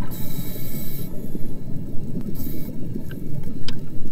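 Underwater rumble of moving water, heard through a submerged camera, with a high hiss for about the first second and again briefly past the middle, and a couple of faint ticks near the end.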